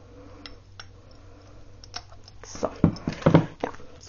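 Handling of a small glass jar, its thin wire handle and a pair of wire cutters: a few faint scattered clicks, then a cluster of louder knocks and taps in the last second and a half.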